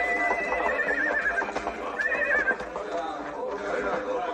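Horses whinnying twice, each a high wavering cry, the first long and the second shorter about two seconds in, over the shuffle of hooves.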